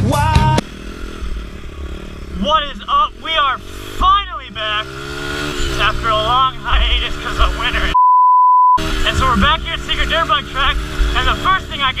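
Honda XR dirt bike's four-stroke single-cylinder engine running at a steady low pace under talking, after rock music cuts off just after the start. About two-thirds of the way through, a steady censor bleep covers a swear for just under a second.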